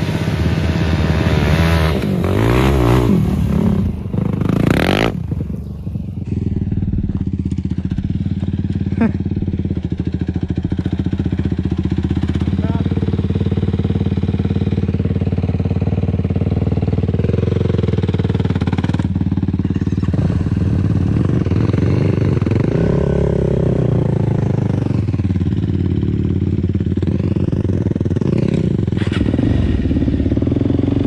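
Single-cylinder four-stroke sport quad engines running at a steady idle close by. A louder rushing burst comes about five seconds in, and the idle pitch shifts slightly a couple of times later on.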